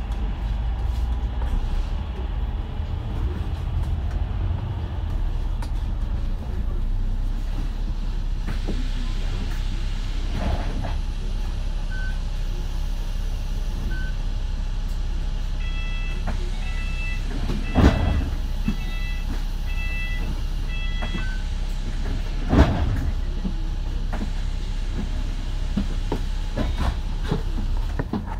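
Double-decker bus engine idling in a steady low drone while the bus stands at a stop, heard from inside. A run of short electronic beeps comes in the middle, and two sharp knocks a few seconds apart stand out as the loudest sounds.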